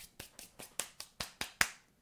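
A quick run of about ten sharp finger snaps, roughly five a second.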